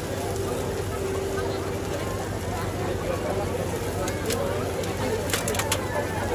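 Busy takoyaki-stall ambience: a steady hum under a murmur of voices, with a few sharp clicks near the end from the cook's metal pick working the pan and plastic tray.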